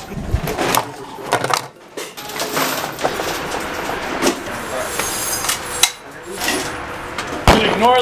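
Clattering handling noise and scattered sharp knocks from earmuff hearing protectors being handled close to the camera, with indistinct voices. A louder, sharper knock comes near the end.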